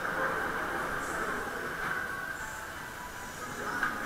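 Waltzer fairground ride running at speed, heard from a rider's seat in a spinning car: a steady rumble and rush from the car and the turning platform.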